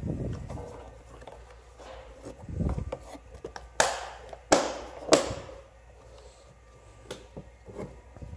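Hands handling a removed plastic HVAC heater-box housing: rubbing, a dull thump about two and a half seconds in, then three sharp handling noises a little over half a second apart near the middle.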